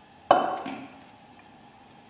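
A glass swing-top oil bottle set down on the worktop: one sharp knock about a third of a second in, with a brief ringing tail.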